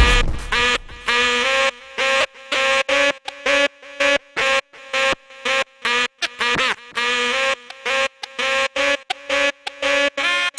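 Turntable scratching: a pitched sample on the record is cut into short, sharp stutters by the crossfader, about two a second, with sweeping rises and falls in pitch as the record is pushed back and forth about two-thirds of the way through.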